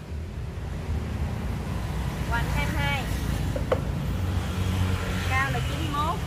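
Steady low rumble of a motor vehicle engine running nearby, getting a little louder about a second in.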